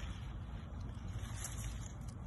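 Steady low rumble of wind buffeting the phone's microphone, with no distinct events.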